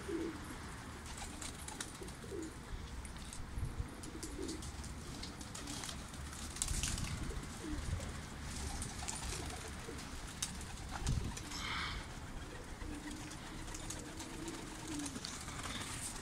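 Domestic pigeons cooing softly, with a longer, drawn-out coo near the end and a few faint clicks.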